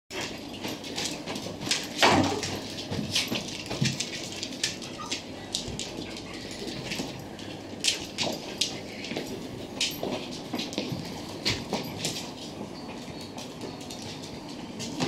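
Small dogs playing on a hard floor: occasional short dog vocalisations among many quick clicks and taps, the loudest sound coming about two seconds in.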